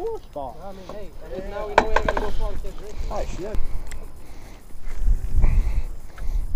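Voices of people talking and calling out, no words clearly made out, followed about five seconds in by wind buffeting the microphone.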